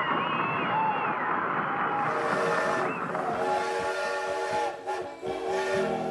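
Steam locomotive whistle sounding about two seconds in, several steady notes held together over a hiss of steam, after a dense jumble of wavering sound.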